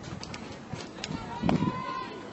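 Ballfield ambience at a softball game: faint voices of players and spectators with a few short sharp knocks, the loudest about one and a half seconds in.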